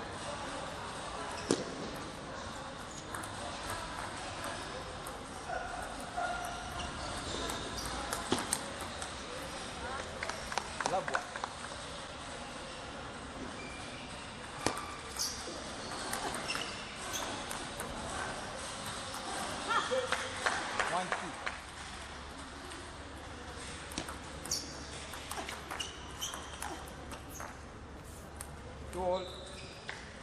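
Table tennis rallies: the plastic ball clicking off rubber paddles and the table in quick runs of sharp knocks, several rallies in a row, echoing in a large hall.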